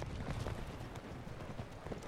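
Hooves of several horses walking, an irregular clatter of hoof falls.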